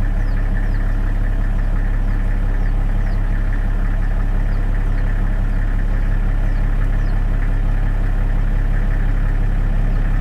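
An engine idling steadily, with faint short high chirps repeating through it.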